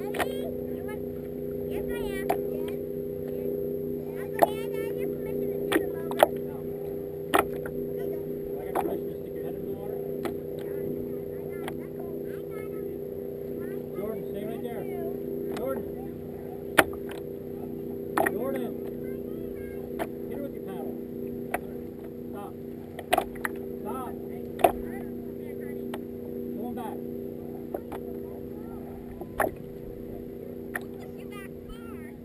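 Water knocking and slapping against the hull of a racing kayak under way, with sharp irregular knocks every second or two over a steady low hum.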